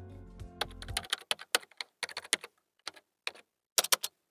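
Computer keyboard typing sound effect: irregular key clicks for about three seconds. The tail of a music jingle fades out in the first second.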